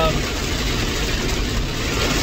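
Steady hiss of heavy rain on a moving car's roof and windows, with wet-road tyre noise, heard from inside the cabin.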